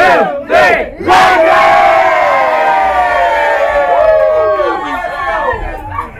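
A group of people shouting together: a couple of short shouts, then from about a second in a long cheer of many voices held for several seconds, sinking in pitch and thinning out near the end. It is a team's rallying cheer breaking from a hands-in huddle.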